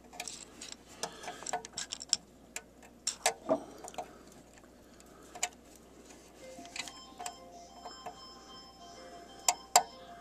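Irregular small clicks and taps of a push-on wire connector being worked onto the terminal tabs of a lighted pushbutton switch, with a sharp double click near the end. About seven seconds in, a phone ringtone starts faintly.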